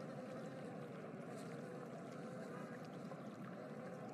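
Faint, steady background noise: an even hiss with no distinct events.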